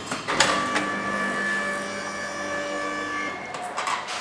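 KONE elevator's automatic doors opening: a couple of clicks, then a steady motor whine for about three seconds that stops before the end.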